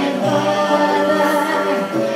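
Live singing of a song, with long held notes.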